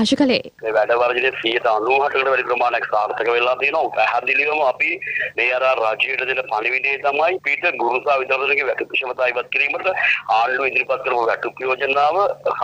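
A man speaking Sinhala over a telephone line, his voice thin and band-limited, with a steady low hum on the line beneath it. His speech starts about half a second in and runs on after a short break at the start.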